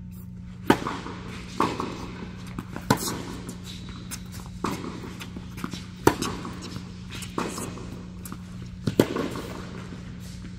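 Tennis ball struck by rackets and bouncing on an indoor hard court during a rally: a serve about a second in, then a string of sharp pops, seven in all, each followed by a short echo off the hall.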